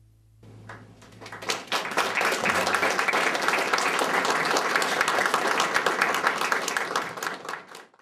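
Audience applauding, with the clapping starting about half a second in over the last low note of the band dying away, swelling to full applause by about two seconds, then fading out near the end.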